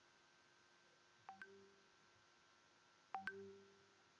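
A faint chime sounding twice, about two seconds apart and louder the second time: each is a quick double strike followed by a short ringing tone that fades away.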